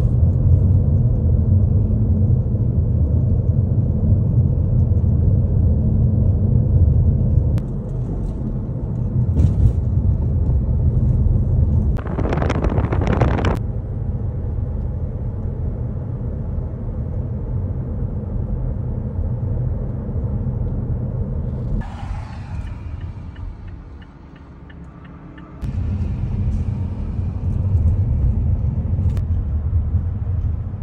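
Low engine and road rumble heard from inside a moving car. A brief louder rush of noise comes a little under halfway through. The rumble dies down for a few seconds about three-quarters of the way in, then picks up again.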